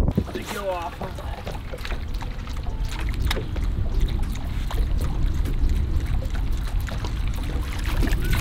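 Wind buffeting the microphone on a boat out on open water, a steady low rumble with faint splashy water noise, and a brief faint voice about half a second in.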